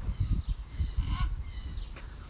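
Several short bird calls, including one falling call about a second in, over wind rumbling and buffeting on the microphone.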